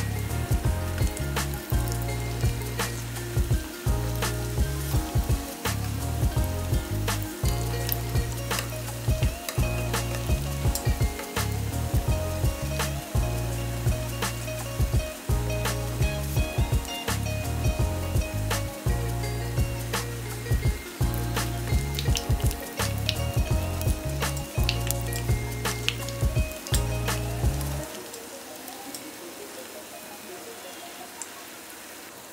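Background music with a steady beat over the sizzle and crackle of twisted yeast doughnuts frying in hot vegetable oil in a pan. The music stops about two seconds before the end, leaving only the frying sizzle, which is quieter.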